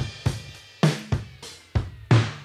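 Recorded drum-kit groove playing back, with kick, snare, hi-hat and cymbals in a steady beat, processed through the iZotope Vinyl plugin for a worn old-record tone.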